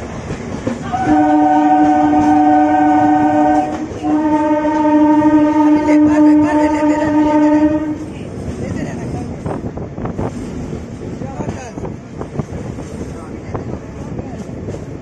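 Train horn sounding two long blasts, each a steady multi-tone chord of about three to four seconds, over the rumble and clickety-clack of a moving train's coaches on the rails; after the horn stops about eight seconds in, only the running noise of the wheels on the track continues.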